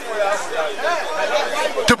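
Background chatter of several voices talking over one another, with a short thump near the end.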